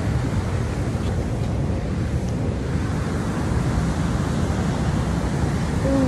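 Steady wind buffeting the phone's microphone, a loud low rumble that rises and falls slightly.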